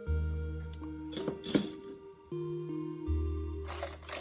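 Soft background music of held notes, with a few light clicks and clinks about a second in and again near the end as a soldering iron works at the wire joint on an LED lamp's circuit board and is set back in its metal stand.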